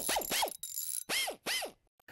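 Sound effect for an animated logo reveal: a run of quick falling tones, three in close succession and then two more about a second in.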